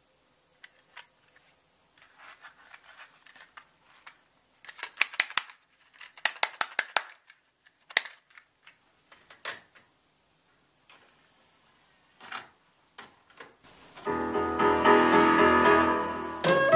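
A plastic cassette tape being handled and loaded into a cassette deck: a run of sharp plastic clicks and clacks, some in quick clusters, from the shell, the cassette door and the deck's buttons. About two seconds before the end, the tape starts playing music, a 1988 Korean blues-style pop song.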